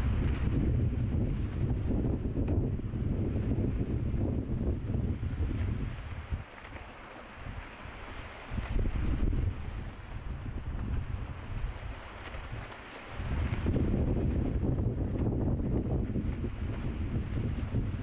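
Wind buffeting the microphone: a heavy low rumble that starts suddenly, eases off about six seconds in and again around twelve seconds, then comes back strongly.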